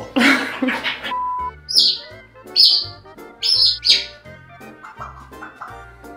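A laugh, then a bird chirping about four times, short falling chirps, over background music.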